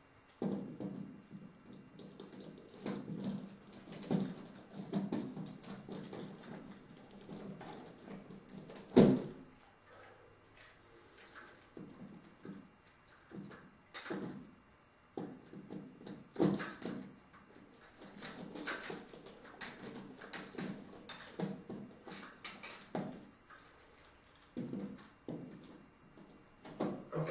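Mounting screws of a chandelier being turned by hand into the ceiling bracket with a screwdriver: short irregular scrapes and squeaks as the screws turn, with light rattles from the fixture and a sharp click about nine seconds in.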